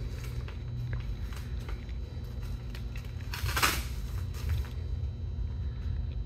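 Handling noise of a costume being fastened at the back: light rustles and small clicks over a steady low hum, with one short, rasping swish about three and a half seconds in.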